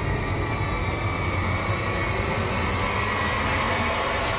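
Steady low rumbling drone of dramatic background score, with a faint high tone held above it.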